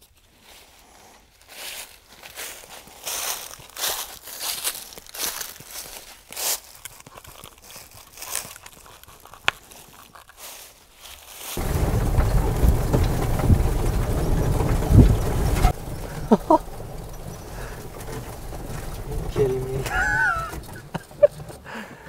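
Nylon strap and buckle rustling and clicking as a trail camera is strapped to a tree trunk. About halfway through, the engine and ride noise of a utility buggy starts suddenly as a loud low rumble, eases after a few seconds and runs on more quietly, with a brief voice near the end.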